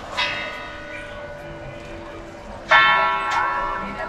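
The Zytglogge clock tower's bell being struck twice, about two and a half seconds apart, the second stroke much louder. Each stroke rings on and slowly fades.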